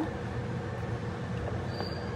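Steady low rumble of water heating in a small electric hot pot, with a light click near the end as its plastic lid is shut.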